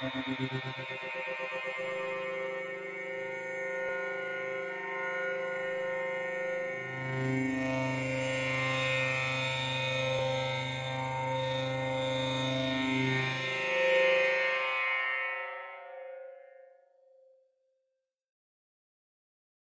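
Layered cinematic synth atmosphere from the FrozenPlain Cinematic Atmospheres Toolkit ('Abstract Energy' patch in the Mirage sampler): a sustained chord that pulses quickly at first, then holds steady. A deep low note joins about seven seconds in and drops out near thirteen seconds, and the whole sound fades away near the end.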